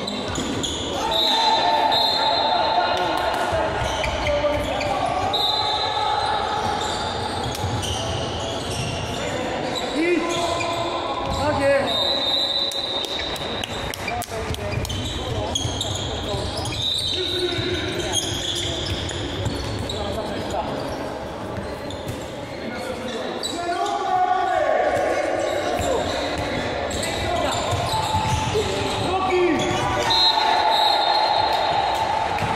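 Indoor handball play in a large, echoing sports hall: the ball bouncing and slapping on the court floor while players call out and shout to each other.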